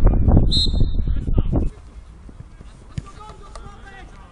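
Wind buffeting the microphone over players' shouts on a football pitch, with a referee's whistle blown once about half a second in, lasting about half a second. The sound then drops suddenly to quieter field noise with distant shouts and a single thump, like a ball being kicked, about three seconds in.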